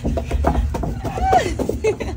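Irregular knocking and clatter of a toddler's hands and knees on a corrugated metal tunnel as he crawls through it, with a short child's voice sound partway through.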